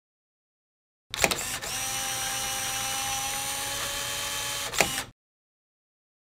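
A mechanical-sounding intro sound effect: a couple of sharp clicks about a second in, then a steady whir with several held tones for about three seconds, ending on another click and cutting off suddenly.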